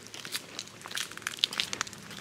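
Footsteps crunching on a gravel path, several irregular crackly steps about half a second apart.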